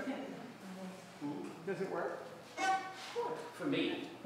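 Indistinct speech: voices talking, too unclear for the words to be made out.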